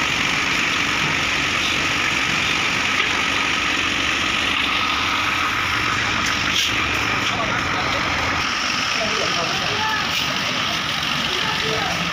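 Site machine engine running steadily under the concrete pour, a constant mechanical din. Faint workers' voices come in over it in the second half.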